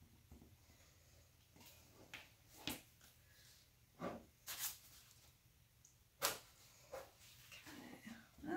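Faint handling noises: a handful of brief, soft knocks and rustles as gloved hands press and shift an MDF panel lying face down in wet paint on a paper-covered table, over a quiet room hum.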